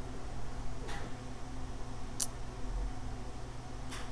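Quiet room tone with a steady low hum and two faint light clicks, a soft one about a second in and a sharper, higher one a little after two seconds, from small handling of the brush and enamel containers on the work table.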